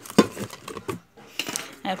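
Plastic cosmetic bottles and product boxes knocking together as a hand rummages through a cardboard box of them: a run of sharp knocks, loudest about a quarter second in, a brief lull around one second, then a few more.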